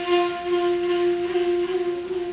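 Solo saxophone holding one long, steady note that slowly fades near the end.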